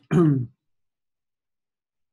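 A man clearing his throat once, briefly, with a falling pitch.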